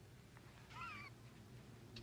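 Near silence, broken just under a second in by one faint, short wavering animal-like cry.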